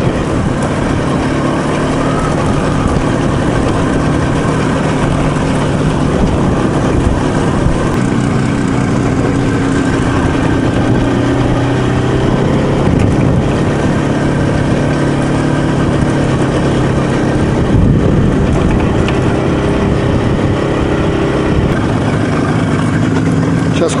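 IZh Jupiter-3 motorcycle's two-stroke twin engine running under way on a dirt track, its note mostly steady and shifting a little in pitch with the throttle, with wind and road noise over it.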